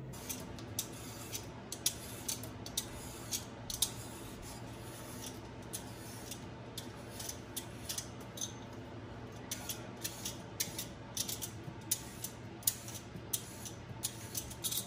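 Vegetable peeler scraping strips of skin off a cucumber in short repeated strokes, with a lull in the middle, over a steady low hum.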